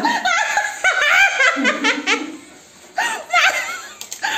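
A woman laughing in repeated high-pitched bursts, easing off a little after two seconds and breaking into laughter again near three seconds.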